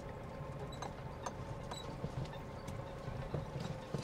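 Footsteps on dry dirt, light clicks and crunches at about two steps a second, over a low steady rumble.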